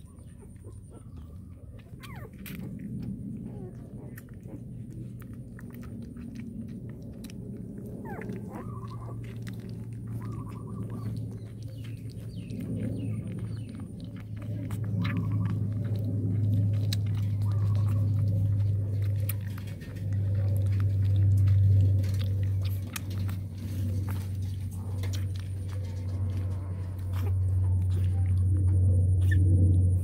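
Newborn puppies suckling milk from a small nursing bottle, with many small wet clicks and a few short high chirps, over a steady low hum that grows louder in the second half.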